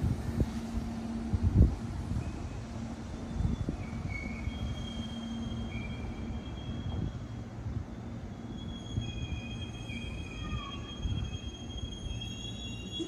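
Meitetsu 6800 series electric train rolling slowly into the terminus platform: a low hum and a few sharp knocks from the wheels over the rails in the first seconds, then thin, high-pitched wheel squeals from about three seconds in, stronger near the end, as it slows to stop.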